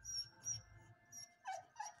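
A dog whimpering in short, high whines, two falling ones close together near the end, the sound of a dog begging for food while another animal is being fed.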